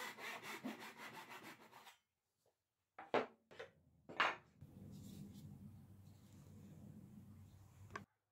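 Fine-toothed backsaw cutting a fret slot in a wooden fretboard blank, with rapid back-and-forth strokes that stop about two seconds in. After a short pause come three short rubbing sounds, then a faint low hum.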